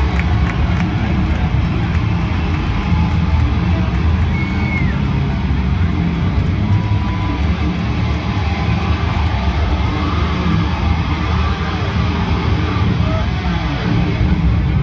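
Loud arena PA sound with a heavy, sustained low bass rumble and no distinct drum hits, heard through a phone microphone at a rock concert.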